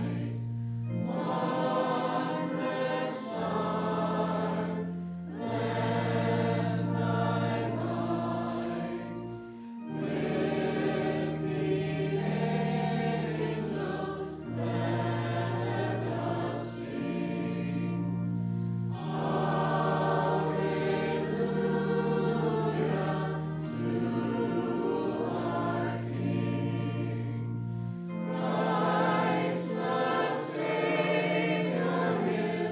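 Congregation singing a slow hymn in long held phrases over sustained accompaniment chords, with a brief break between verses near the middle.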